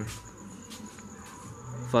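Crickets chirping in a steady high trill.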